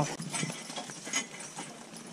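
Hooves of a team of two Percheron draft horses clip-clopping at a walk on a dirt trail, a string of irregular knocks.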